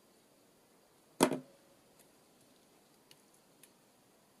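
A single sharp knock about a second in, dying away quickly, followed by a few faint small taps.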